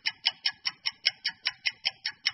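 Clock-ticking sound effect, a fast, even run of about five sharp ticks a second, marking time passing.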